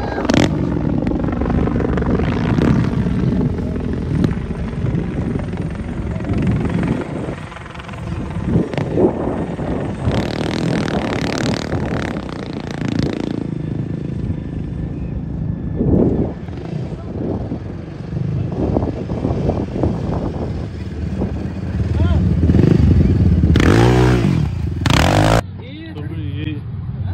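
Quad bike (ATV) engine running as it is ridden over the sand, with indistinct voices; loudest for a few seconds near the end, then dropping off suddenly.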